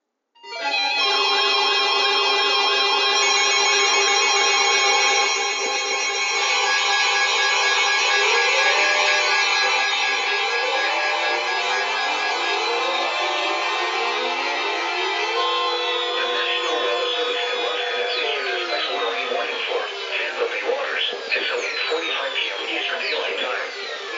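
A bank of NOAA weather alert radios sounding their alarms at once as a Special Marine Warning comes in: a loud, dense chord of steady alert tones. From about eight seconds in, rising and falling siren-like sweeps join and thicken toward the end.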